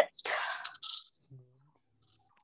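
A person whispering: a breathy, hissing burst of whispered voice, then a short 's'-like hiss and a brief low murmur, before it goes quiet.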